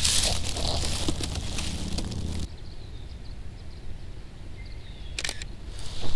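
Close rustling and handling noise as a person shifts and pushes up from lying on dry grass and leaves. It stops suddenly a little under halfway in, leaving quiet outdoor ambience with a few faint bird chirps and a short double click near the end.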